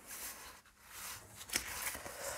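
A long paper-covered card strip rustling and sliding softly on a cutting mat as it is handled and turned over, with a light tap about one and a half seconds in.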